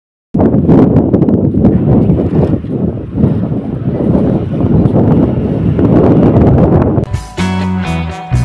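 Loud wind buffeting the phone's microphone: a rough, fluctuating noise with no steady pitch, starting just after a brief dead-silent gap. Background guitar music comes back in about seven seconds in.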